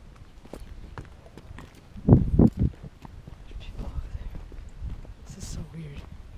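Footsteps of people walking outdoors, a scatter of short knocks, with a brief loud burst of noise about two seconds in.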